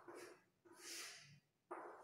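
Chalk writing on a blackboard: a few faint strokes and taps, each with a short ring from the board, and a soft high scratch of chalk about a second in.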